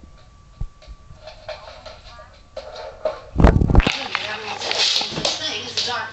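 People's voices in a small room, faint at first. A single heavy thump comes about three and a half seconds in, and the voices are louder and noisier after it.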